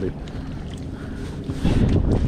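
Boat's outboard motor running at a steady low idle, with wind buffeting the microphone and a louder gust near the end.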